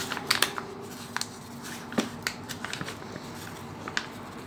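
Plastic pouch of powdered white clay being handled and opened by gloved hands: crinkling and rustling with scattered sharp clicks.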